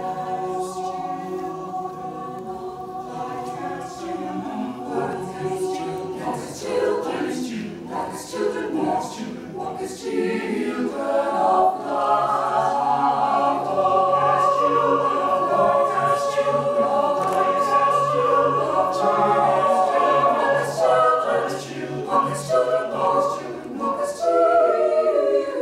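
Mixed choir of women's and men's voices singing in sustained chords; the singing grows louder about halfway through and holds there.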